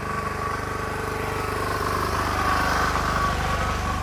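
Engine-driven generator running loudly and steadily with a fast, even pulse, growing louder toward the middle and easing a little near the end.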